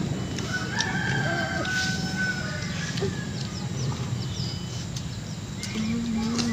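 A rooster crowing once: one long held call that starts about half a second in and lasts about a second and a half.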